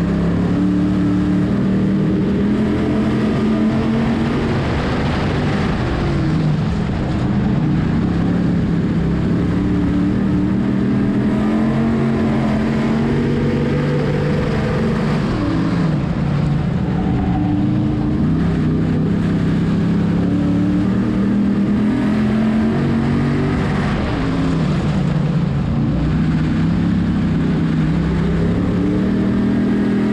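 Dirt-track sportsman modified race car's engine at racing speed, heard from inside the cockpit. Its pitch dips and climbs again about every eight or nine seconds as the car lifts for the turns and accelerates down the straights of the oval.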